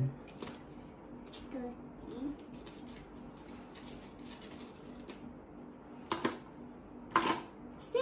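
Wooden counting sticks clicking against each other and a tray as they are handled, with two sharper clacks near the end. A child's voice murmurs faintly about two seconds in.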